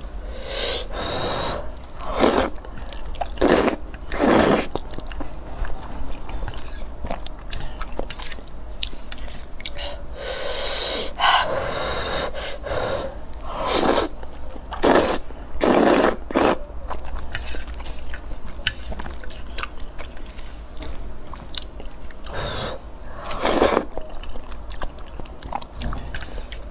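A person slurping noodles off chopsticks, with chewing between. There are about nine loud slurps, bunched in the first few seconds, around the middle and once more near the end.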